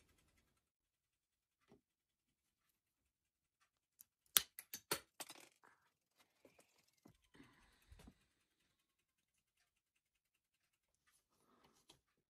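Mostly near silence, with a quick run of sharp clicks and knocks about four to five seconds in and a few fainter ones a little later: a seat post and a plastic seat clamp being handled and fitted into a bicycle frame.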